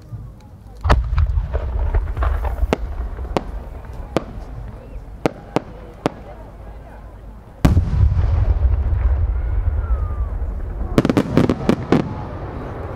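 A No. 8 senrin-dama firework shell: a deep boom about a second in, scattered sharp cracks, and a second deep boom near eight seconds. Near the end comes a rapid cluster of many small pops as its crowd of little sub-shells bursts.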